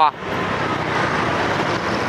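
Steady street traffic noise, motorbikes running along a city street heard from a moving vehicle among them, an even rush with no distinct events.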